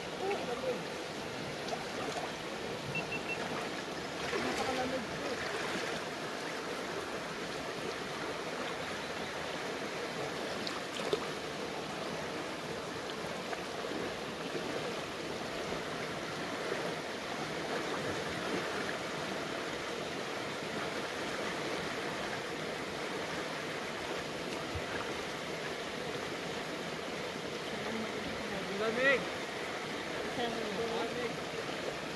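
Steady rush of a shallow creek, its water stirred by people wading through it. Brief voices come in near the start and near the end.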